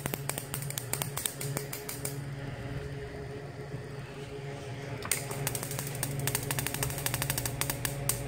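A home-built high-voltage circuit running: microwave oven transformers give a steady mains hum. Over the hum comes a rapid crackle of sharp snaps from the vibrator interrupter and its arcing, about a dozen a second. The crackle runs for the first two seconds, eases off, and comes back about five seconds in.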